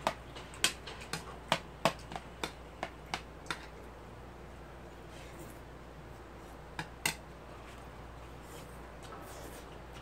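Eating sounds from a meal of jajangmyeon with a metal fork: a quick, irregular run of about a dozen sharp clicks in the first three and a half seconds, then two more about seven seconds in.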